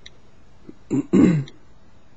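A man coughing to clear his throat: a short catch, then a louder throaty cough, about a second in.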